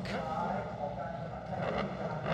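A grid of 1000cc superbike engines idling together as the field waits for the start, a steady low rumble.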